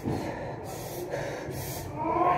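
A woman breathing hard and forcefully through an ab wheel rollout, with two quick hissing breaths in the second half.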